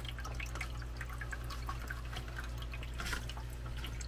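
Small resin ExoTerra waterfall running, water trickling and dripping into its basin in a steady patter, over a low steady hum.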